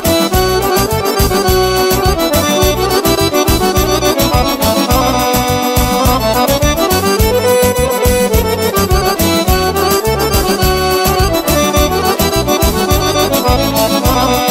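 Instrumental break of a Bulgarian folk song: an accordion plays the melody over a steady beat with bass.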